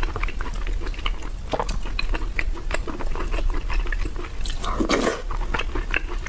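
Close-miked chewing of a mouthful of soft braised meat and rice: a steady run of small wet clicks and smacks from the mouth, with a louder, longer sound about five seconds in.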